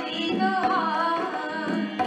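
A woman singing a Hindi devotional bhajan in a melodic, gliding line over a steady held drone note, with light tabla strokes beneath.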